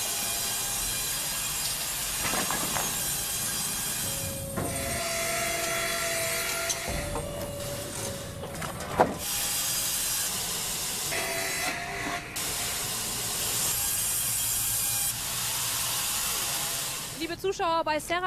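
Serra horizontal band sawmill running and sawing a log: a steady hissing machine noise, with a faint whining tone that comes and goes a few times and abrupt changes every few seconds.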